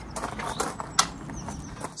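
A few scattered light knocks and clicks, the sharpest about a second in.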